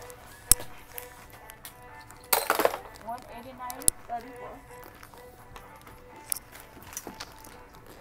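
Quiet background music playing in a clothing store, with a sharp click about half a second in and a brief rustling clatter at about two and a half seconds.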